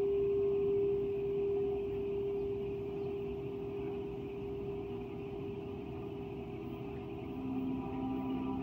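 A large bronze bell, struck once just before, ringing on with a long, slowly fading hum at one steady pitch. A second, lower steady tone comes in near the end.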